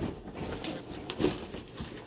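Rustling of clothing and light knocks as a person sits down in a padded gaming chair, with the loudest knock a little past the middle.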